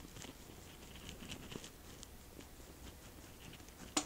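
Faint, irregular soft scratching as a stippling makeup brush's bristles press and sweep cream contour across the skin.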